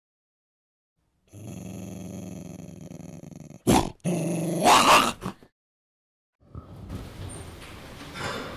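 A dog growls steadily for about two seconds, then gives one sharp bark and a longer, louder bark; after a short silence, faint hall room noise comes in near the end.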